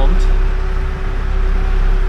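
Charter fishing boat's engine running steadily while underway, heard inside the cabin as a loud, low, constant drone.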